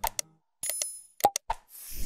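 Sound effects of an animated subscribe button: a series of short click-pops as the cursor presses the buttons, a brief bell ding about two-thirds of a second in, and a whoosh near the end.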